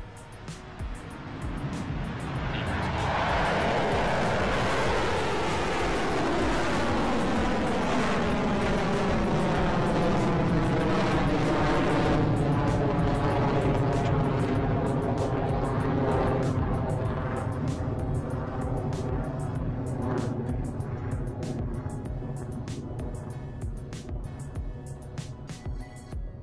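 Rocket Lab Electron rocket's first stage, nine Rutherford engines, roaring through liftoff and early climb. The noise builds over the first three seconds, holds with a falling, sweeping whoosh, and slowly fades as the rocket climbs away. The engines are running normally.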